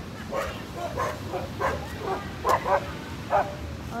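Dog barking repeatedly, about nine short barks, with the loudest ones in the second half.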